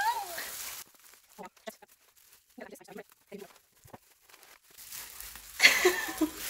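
Bubble wrap crinkling and rustling as it is pulled apart by hand, building to a loud crackly burst near the end. Before that, the middle is mostly quiet apart from a few faint murmurs.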